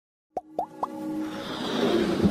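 Animated logo intro sound: three quick rising 'bloop' pops a quarter second apart, followed by a swelling whoosh with music building up underneath.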